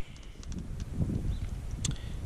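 Handling noise of a plastic electric paintball hopper being picked up and turned in the hand, with faint ticks and one sharp click near the end, over a low rumble.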